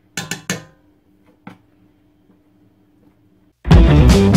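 A metal offset spatula clinking against a stainless-steel mixing bowl as it scoops buttercream: three quick knocks, then a fainter one about a second later. Near the end, loud guitar-led music starts abruptly.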